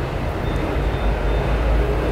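Steady low rumble of background noise, with a faint thin high tone in the middle.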